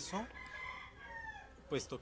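A rooster crowing faintly: one drawn-out crow of about a second whose pitch sinks at the end.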